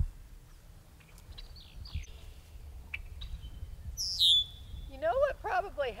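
A bird calls about four seconds in: a high, thin call that drops steeply in pitch and then holds a steady note for a moment. Fainter high calls come about two seconds in. A person starts talking near the end.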